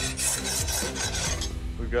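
A steel file drawn in a quick series of strokes across a freshly quenched leaf-spring steel sword blade, making short high scrapes. This is the file test for hardness, and the result is a hardened blade.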